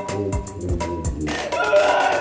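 Upbeat music with a steady beat of low thumps. About a second and a half in, a loud, high, drawn-out wailing cry comes in over it.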